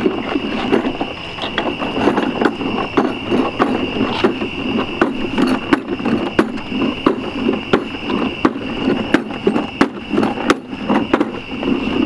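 Grass seed being shaken out of shoes: irregular sharp clicks and rustling of seed and shoes. A steady high-pitched whine runs underneath.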